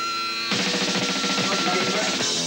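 Rock music with a drum kit, the full band coming in about half a second in.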